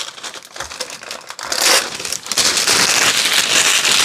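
Thin plastic bag crumpled and crinkled in the hands, quieter at first and louder from about halfway through.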